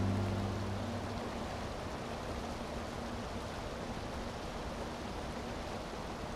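The last notes of an acoustic band song, guitar and accordion, ring out and fade in the first second. After that only a steady, even hiss of outdoor background noise remains.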